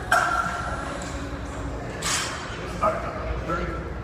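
A man's voice giving short, loud shouts, the loudest right at the start and shorter ones near the end, over gym background noise in a large hall.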